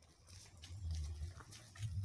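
Faint footsteps on a stony dirt road, with two low, muffled rumbles, one about halfway through and one near the end.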